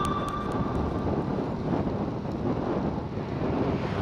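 Steady rush of wind on the microphone, with road and tyre noise, from a road bike travelling at about 50 km/h.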